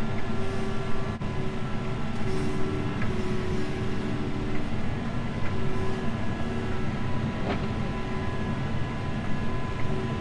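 John Deere 6155R tractor heard from inside the cab, running steadily under load while it drives a PTO rotary topper through rushes. It is a continuous drone, with several steady whining tones over it.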